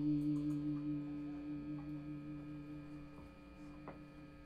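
An amplified electric guitar note ringing out after a struck chord: a low steady tone with overtones that fades slowly. A few faint clicks, and a small knock near the end.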